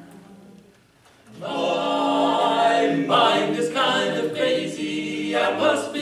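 Men's barbershop quartet singing a cappella in four-part close harmony. The singing comes in about a second in, after a brief hush.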